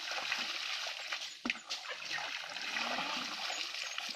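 Water scooped from a ditch with a bowl and poured over a small dog, splashing and trickling back into the water. There is a sharp knock about a second and a half in.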